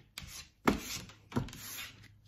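Tarot cards slid and laid down on a tabletop, three short brushing strokes.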